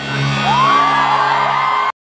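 Live rock band at full volume, holding a sustained low chord, in a hall crowd. About half a second in, a voice rises into a long held whoop over it, and the recording cuts off suddenly just before the end.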